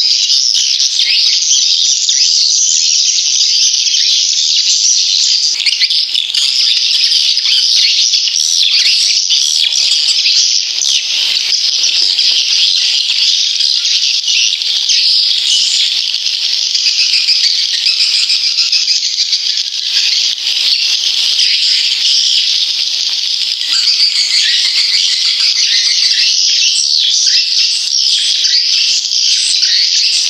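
Recorded swiftlet calls: a dense, unbroken chorus of high, rapid chirping twitters, the kind of lure sound played from swiftlet houses to attract nesting birds.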